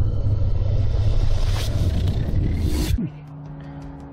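Cinematic logo-intro sound design: a deep, loud rumble with rising whooshes that cuts off suddenly about three seconds in, leaving a soft held music chord.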